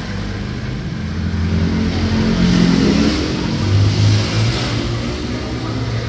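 A road vehicle's engine running and accelerating past, its pitch shifting and loudest in the middle seconds, then easing off.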